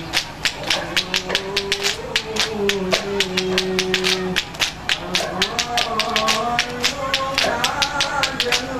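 A group of men clapping their hands in a quick, even rhythm while a man chants sholawat into a microphone, holding long wavering notes.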